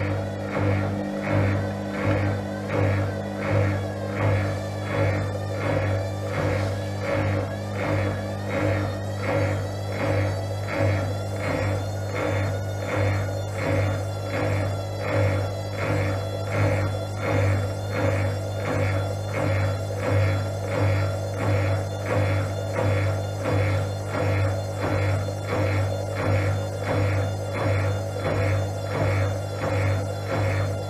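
Gorenje WA72145 front-loading washing machine with its drum turning fast and the laundry pressed against the drum wall: a steady motor hum with a throb that pulses a little more than once a second.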